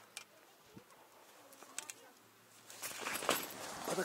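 A few faint ticks, then from about three seconds in a louder rustling and scuffing of tent fabric and plastic sheeting as someone climbs into the tent.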